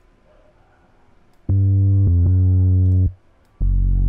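Low synth bass notes from the Diva synthesizer played one at a time in FL Studio's piano roll: about a second and a half in, a sustained low note sounds for about a second and a half, briefly re-struck midway, and near the end a lower note starts.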